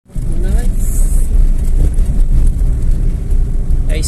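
A vehicle driving along a sandy dirt road: a loud, steady low rumble of engine and road noise.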